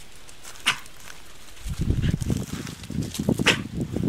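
A dog retching, with repeated irregular heaves that start just under two seconds in and run on to the end, sounding like choking as it brings up vomit. A sharp gulping click comes about three-quarters of a second in and another near the end.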